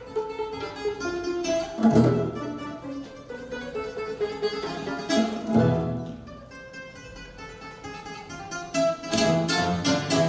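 Live chamber ensemble playing a hasaposerviko, a Greek dance tune: plucked bouzouki and guitar lead over piano, violins and cello. Loud low chords land about two seconds in and again past the middle, the music thins out for a few seconds, then the strumming grows busier and louder near the end.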